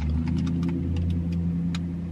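Car engine running steadily, heard from inside the cabin as a low, even hum.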